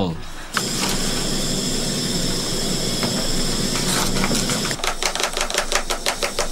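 A steady mechanical hum with a thin high whine for about four seconds, then a spoon stirring banana-flour porridge in a plastic mug, a fast run of light clicks.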